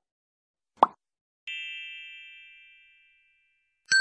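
Subscribe-button animation sound effects: a short pop a little under a second in, then a bright bell-like chime that rings out and fades over about a second and a half, and another chime starting just at the end.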